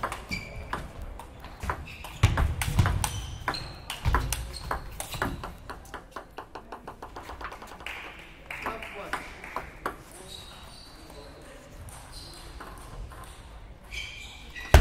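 Celluloid table tennis ball clicking off bats and the table in a rally. Then a loose ball bounces with ever-quicker bounces as it comes to rest, followed by a few isolated clicks.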